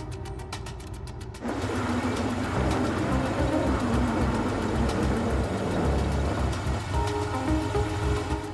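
Background music with steady tones, then about a second and a half in it gives way to the engine and tyre noise of a Mercedes-Benz SUV pulling up and stopping. The music comes back in near the end.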